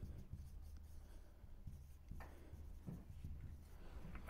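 Faint strokes of a marker pen writing on a whiteboard, one a little clearer about two seconds in, over a steady low room hum.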